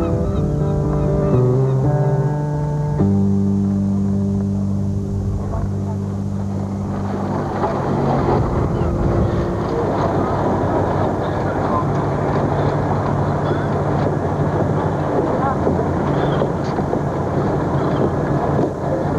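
Synthesizer transition music with held notes for about the first seven seconds, giving way to a steady rushing outdoor harbor ambience with a low hum running under it.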